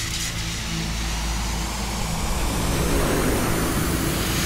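Film trailer sound effects: a low, steady rumble under a held drone that builds slowly, like a large burning object rushing down through the air.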